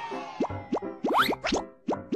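A quick run of cartoon-style rising-pitch pop sound effects, about six in two seconds, over upbeat children's theme music, as the letters of an animated TV programme title logo pop into place.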